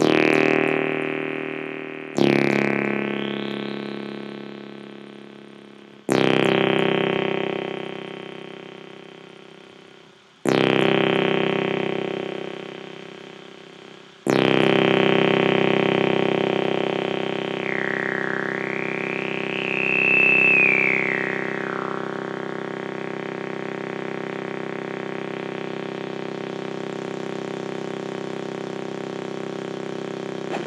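Synthesizer chords: five chords struck a few seconds apart, each fading away, the fifth one held. Over the held chord a high tone glides up and back down for a few seconds.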